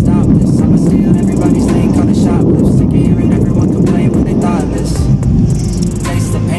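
Strong wind rumbling and buffeting on a phone's microphone as a dust storm blows in, with a song playing faintly underneath.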